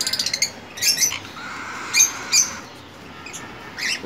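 Small birds chirping: a quick run of high chirps at the start, then short, high calls about one second and two seconds in.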